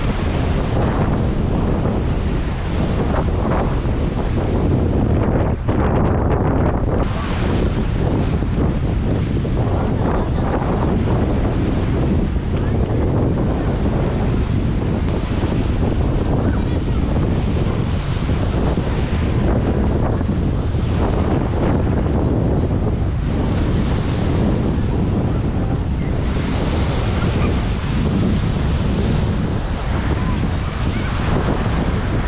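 Wind buffeting the microphone, loud and steady, over the wash of waves on the shore.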